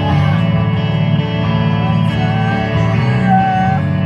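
Loud live band music led by electric guitar, heard from within the audience at a rock concert, with a wavering melody line over sustained chords.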